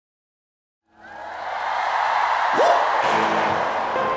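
Large concert crowd cheering and screaming, fading in after about a second of silence and holding steady, with one rising yell near the middle.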